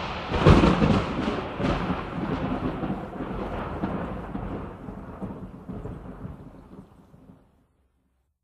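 Rumbling, crackling noise at the close of the album, loudest at the start and fading away to silence shortly before the end.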